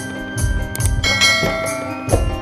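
Electronic keyboards playing an instrumental film-song melody in a bell-like voice, held notes over the keyboard's drum rhythm with a repeating low beat and light cymbal ticks.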